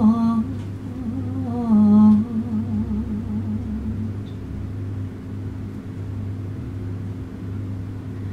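A woman humming a slow, low melody with her lips closed: a few held notes with a slight waver, then a soft, steady held tone from about three seconds in.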